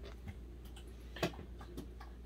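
A few faint clicks and light taps, the sharpest about a second in, from a boxed vinyl figure in a hard plastic protector being handled and set down on a tiled table, over a steady low hum.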